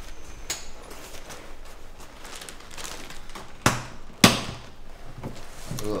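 Paper rustling as an envelope of banknotes is handled, then two sharp knocks about half a second apart.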